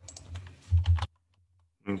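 Computer keyboard typing: a quick run of keystrokes in the first second, then a pause before speech resumes.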